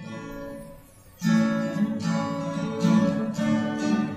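Steel-string acoustic guitar being strummed: one chord struck and left to ring for about a second, then steady rhythmic strumming begins, with no singing yet.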